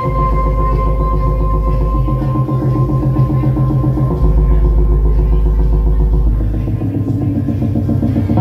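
Live band music: guitar and synthesizers over a steady beat, with a deep held bass note that shifts to a new note about halfway through.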